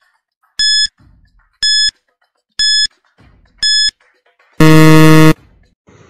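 Quiz countdown-timer sound effect: a short electronic beep once a second, four times, then a loud, harsher buzzer lasting under a second, signalling that the five seconds for answering are up.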